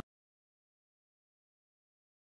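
Complete silence: the sound cuts off abruptly at the very start and nothing is heard after.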